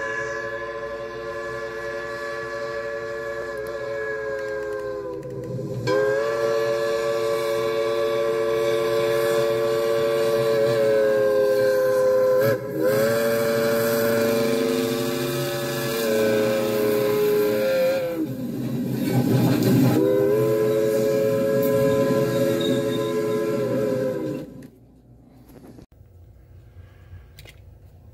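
Steam locomotive whistle sounding several notes together, blown in about four long blasts of five or six seconds each, the pitch bending slightly as each blast starts and stops.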